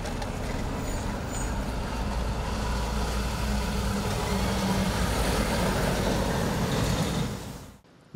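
Road traffic driving past: a van towing a trailer and a Volvo tanker lorry go by close, with steady diesel engine and tyre noise. The sound fades out near the end.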